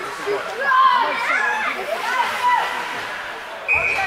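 Many overlapping voices of spectators and children chattering in an ice rink. Near the end a single long, steady whistle blast sounds, the referee stopping play.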